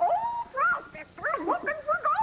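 A high-pitched character voice speaking and exclaiming in short phrases whose pitch swoops up and down.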